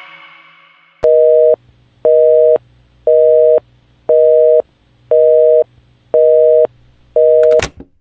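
The song fades out in the first second. Then a telephone busy signal sounds: seven beeps of a steady two-note tone, each about half a second long, one per second. The last beep is cut short by a click near the end.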